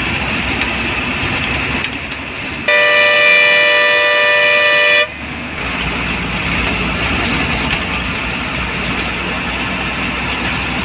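A bus's horn gives one long, steady blast of about two and a half seconds a few seconds in, over the running engine and road noise heard from inside the moving bus.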